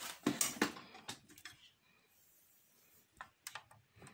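Handling noises: a scatter of light clicks and knocks as small objects are picked up and moved about, falling quiet in the middle and coming back with a few more clicks near the end.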